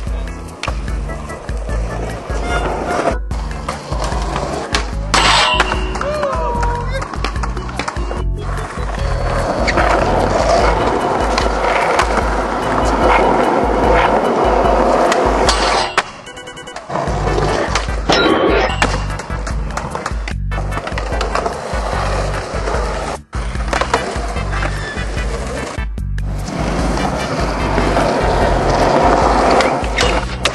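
Music with a steady bass beat laid over skateboard sounds: urethane wheels rolling on concrete and the board knocking and landing. The audio cuts off sharply several times at edits.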